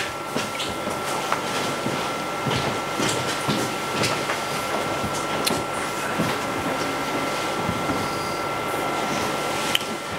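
Meeting-room room tone: a steady hum with a thin, faint whine held throughout, and scattered small knocks and rustles of people shifting at the table.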